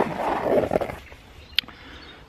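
Fabric handlebar bag rustling as its lid is pulled shut by hand, followed by a single sharp click.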